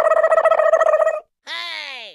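Edited-in sound effects over a title card: a held, warbling tone for about a second, then after a brief gap a short tone gliding down in pitch.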